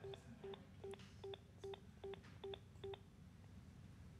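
Panasonic DECT cordless phone handset sounding a faint train of short, low electronic beeps, about two to three a second, as it activates voice assist through the paired cell phone. The beeps stop about three seconds in.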